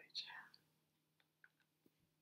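A brief breathy, whispered voice sound just after the start, then near silence broken by a few faint clicks.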